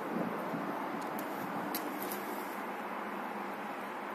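Steady rushing background noise, with a few faint clicks between about one and two seconds in.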